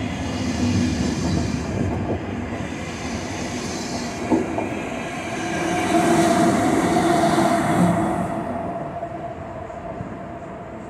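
A departing electric passenger train: the coaches roll past at low speed with a sharp knock from the wheels about four seconds in. The rear locomotive, a Bombardier TRAXX E186, then passes with a steady electric whine that is loudest as it goes by, and the sound fades as the train pulls away.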